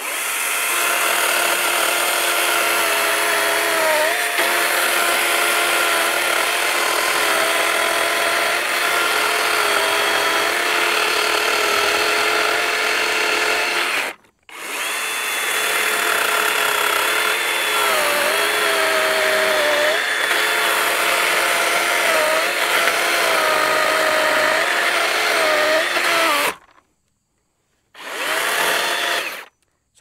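DeWalt DCCS677 60V brushless battery chainsaw with a 20-inch bar cutting through a log: a steady electric motor whine with chain and wood noise, its pitch dipping briefly under pressure but never stalling. Its single-speed trigger keeps the motor at one speed. The sound comes in three stretches, breaking off abruptly about halfway through and again near the end.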